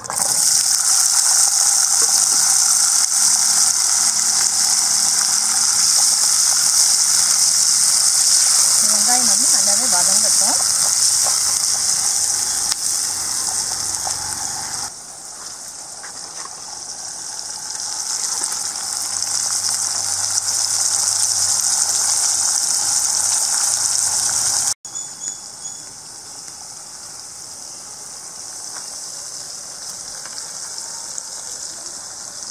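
Chopped shallots sizzling in hot oil in a kadai: a loud, steady hiss that starts the instant they go into the pan. It drops quieter about halfway through and breaks off sharply near the end, leaving a fainter hiss.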